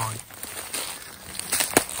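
Rustling and light crunching of footsteps through dry grass and leaf litter, with a few sharp clicks about a second and a half in.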